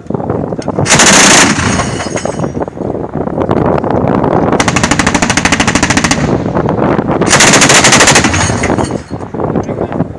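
ZU-23-2 twin 23 mm anti-aircraft autocannon firing three bursts of rapid fire: a short one about a second in, the longest, about a second and a half, around the fifth second, and another just after the seventh second, with echoing rumble between bursts.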